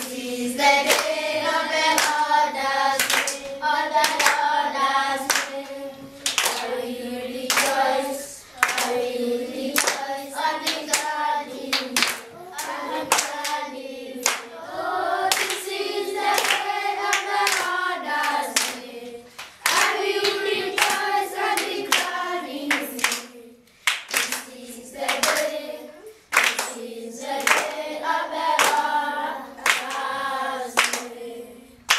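A children's choir singing a hymn together, clapping their hands on a steady beat.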